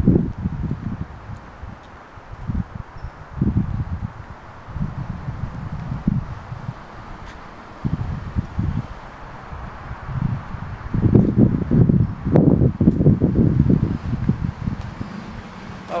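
Wind buffeting the microphone in uneven low gusts over a steady outdoor hiss, strongest near the end.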